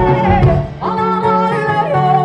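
Live band music: a woman sings long, wavering held notes over electric guitar, bass and drums. The voice breaks off briefly a little before the middle, then comes back on a higher note.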